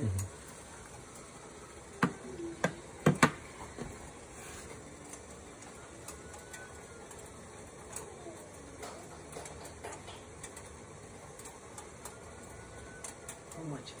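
Pot of water heating on a stove just short of the boil, a faint steady hiss, with a few sharp clicks or knocks about two to three seconds in, the loudest near three seconds.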